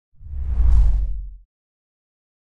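A deep whoosh sound effect marking the transition to the end logo card. It swells in over about half a second and fades out about a second and a half in.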